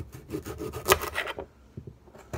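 Kitchen knife sawing through a raw radish on a bare countertop: a quick run of short scraping strokes, the loudest about a second in, fading out near the end.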